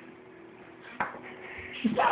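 Quiet room tone with a single sharp click about a second in, then a young child's voice starting up near the end with a rising pitch.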